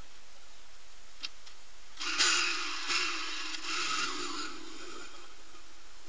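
An off-road motorcycle engine revving in a few blips, starting suddenly about two seconds in and dying away after about three seconds, preceded by a faint click.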